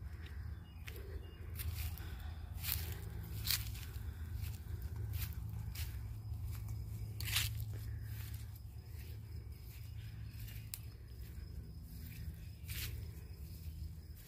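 Footsteps through long grass while walking, heard as scattered, irregular crisp steps and swishes over a steady low rumble on the microphone.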